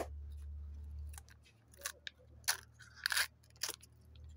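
Plastic wrapper and foil lid of a Fun & Joy chocolate egg being peeled off by hand: several short crinkling rips, with a longer one about three seconds in.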